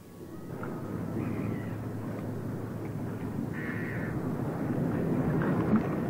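Outdoor ambience sound effect fading in and slowly growing louder, with a bird calling twice.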